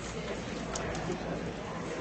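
Indistinct background murmur of a room full of students, with the rustle and small clicks of people moving about.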